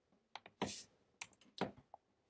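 Typing on a computer keyboard: a handful of separate keystrokes, irregularly spaced.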